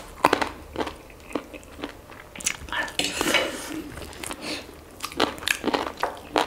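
Close-miked eating sounds: bites and chewing of fried chicken wings and slurping of noodles, with short clicks of forks on plates throughout and a longer slurp about three seconds in.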